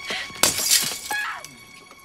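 A glass tube, by the look of it a fluorescent light tube, is smashed: a loud crash of shattering glass about half a second in, followed by a woman's brief cry, over tense background music with sustained tones.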